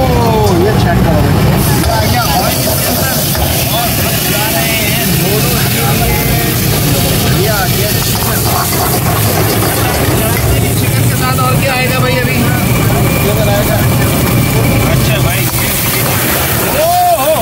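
High-pressure gas wok burner burning with a loud, steady rush under voices of people around the stall.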